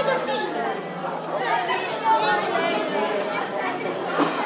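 A gathering of people chattering, with many voices talking over one another.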